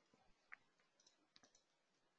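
Near silence, with a few faint computer-mouse clicks, one about half a second in and a couple more softly around a second later.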